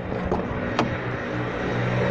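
A motor vehicle engine running with a steady low hum that grows slightly louder, with two light clicks in the first second.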